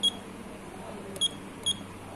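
Juki LK-1900A bartack machine's operation panel beeping three short, high-pitched beeps as its keys are pressed to step the Y-scale value down to 90: one right at the start, then two about half a second apart around a second and a half in.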